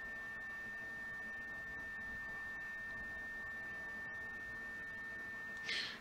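A steady high-pitched electronic whine holding one pitch, with a fainter lower tone beneath it, over faint room hiss.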